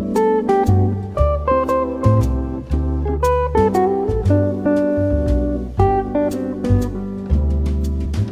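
Instrumental smooth jazz recording: plucked guitar notes and chords over a bass line that changes every second or so, with light drum hits.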